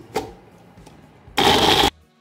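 Nutri Blend personal blender's motor running in one loud half-second burst near the end, stopping abruptly, as it blends guava chutney. Before it, a knock as the jar is fitted onto the base.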